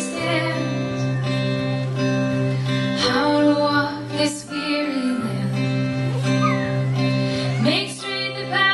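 Live band music: guitars playing a steady, sustained accompaniment to a slow song, with a voice singing in places.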